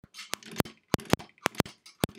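Sewing machine stitching slowly, a few stitches at a time: a series of sharp, unevenly spaced clicks, about seven in two seconds.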